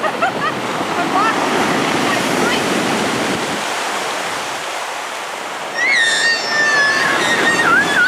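Ocean surf breaking and washing up a pebble beach in a steady rush. About six seconds in, a high-pitched voice cries out for around two seconds over the surf.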